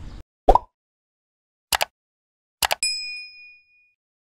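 Subscribe-button animation sound effects: a short rising pop, a click about a second later, another click, then a bright bell ding that rings out for about a second.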